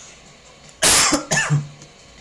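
A man coughing twice in quick succession about a second in, the first cough the louder.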